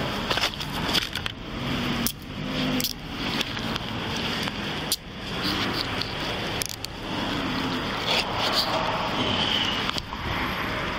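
Handcuffs being put on: scattered sharp metallic clicks over a continuous scraping and rustling of uniform fabric rubbing against the body-worn camera.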